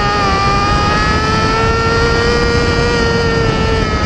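Mini sprint race car's engine heard from the cockpit, running hard at high revs, loud and steady, its pitch dipping slightly about a second in, then climbing slowly and easing back near the end.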